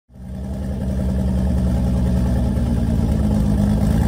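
An engine idling steadily, rising in over the first half second.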